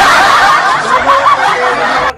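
A loud burst of high-pitched laughter that starts and cuts off abruptly, much louder than the talk around it, like a laugh sound effect added in editing.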